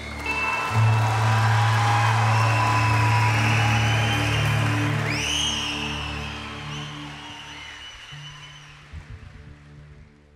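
Concert audience applauding and cheering, with a whistle about five seconds in, over a held low final note and soft sustained music; the applause dies away toward the end.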